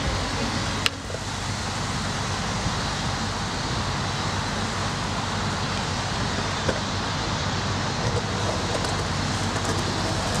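Steady, even outdoor roar, like traffic noise, with one sharp click about a second in.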